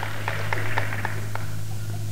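Audience laughter with a few scattered claps, dying away after a punchline, over a steady low hum from the old recording.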